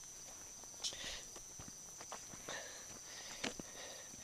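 Faint footsteps on loose dirt and rock, a few irregular steps.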